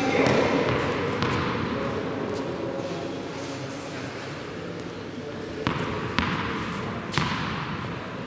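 Tennis ball bouncing on the sports hall floor: a few sharp knocks in the second half, each with a hall echo, as it is bounced before the serve. Voices are heard at the start.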